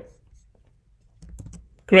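A few faint clicks of computer keyboard keys.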